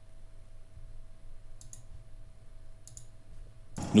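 Two faint, short clicks about a second apart over a low steady hum.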